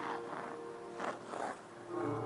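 Figure skate blades scraping across the ice twice, about a second apart, over quiet music.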